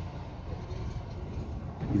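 2007 Ford Fiesta engine idling with a steady low hum, heard from inside the cabin. This is the moment the fault shows: a hidden aftermarket anti-theft blocker's relay is dropping out, the fault that makes the car stall soon after starting.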